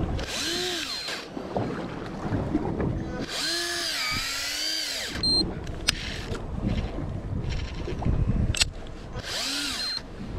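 Daiwa Tanacom 1000 electric fishing reel's motor whining in three short runs, each rising then falling in pitch as it winds line. The first run comes just after the start, a longer one about three seconds in, and the last near the end. Wind and water noise fill the gaps, with a couple of sharp clicks.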